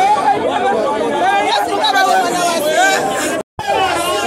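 A woman speaking, with several other voices chattering over and around her in a crowd. The sound cuts out for a split second near the end.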